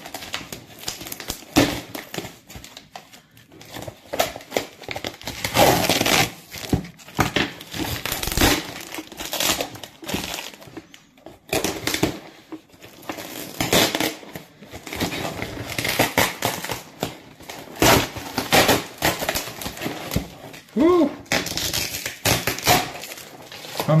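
A cardboard parcel being unwrapped by hand: scissors cutting at packing tape, then tissue paper and packaging rustling and crinkling in irregular bursts.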